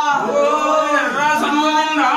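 Male voices singing a Hindu devotional chant, long held notes that slide up and down in pitch.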